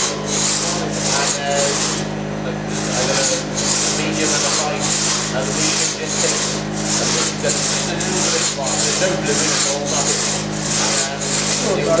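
Two-man crosscut saw (double buck) cutting through a log, each stroke a rasping whoosh of the teeth through the wood, at about two strokes a second. There is a short break around two seconds in.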